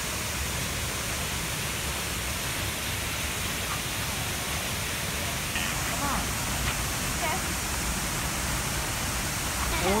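Waterfall and the fast creek below it, a steady, even rush of falling and running water.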